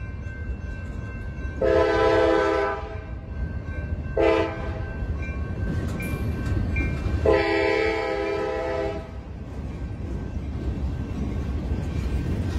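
Freight train horn sounding three blasts, long, short, long, over the steady low rumble of boxcars rolling along the track.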